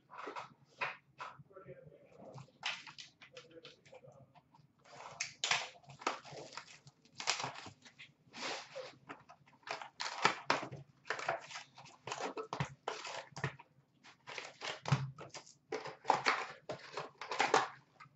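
Cardboard hobby box of trading cards being opened and its foil-wrapped packs handled and torn: a steady run of short crinkling, rustling bursts.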